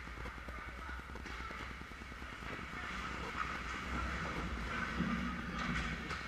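Ice hockey rink sound during play: a steady low hum with a patter of clicks, skates scraping on the ice and distant voices, growing louder over the last few seconds as players skate in toward the net.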